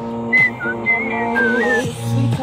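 A person whistling a melody along with a recorded pop song. The whistle comes in short high phrases with slides between the notes, starting about a third of a second in and carrying on until shortly before the end, over the song's steady backing.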